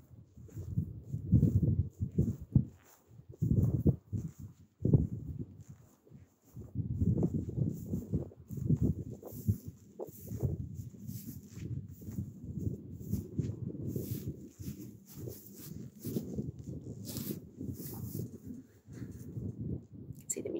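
Irregular low rumbling bursts and thumps of wind and handling noise on a handheld camera's microphone while walking.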